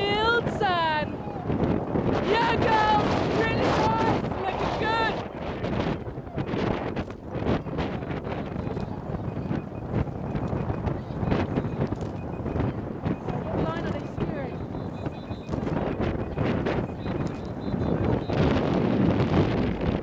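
Wind buffeting the microphone, with shouting voices in the first five seconds and again briefly around fourteen seconds.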